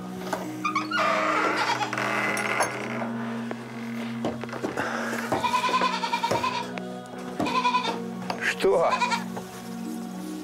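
A domestic goat bleating several times in a trembling voice: one long bleat about five seconds in, then shorter ones, over steady background music.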